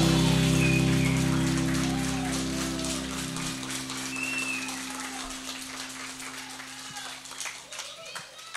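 A live band's final held chord ringing out and slowly fading, the bass dropping out about three seconds in, over audience applause.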